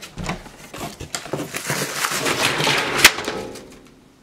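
Rustling and clattering handling noises: a dense run of small clicks that builds to one sharp click about three seconds in, then fades.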